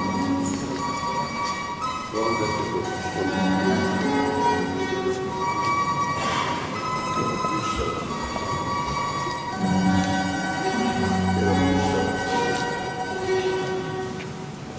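Church organ playing a slow hymn in long, sustained chords that change every second or two.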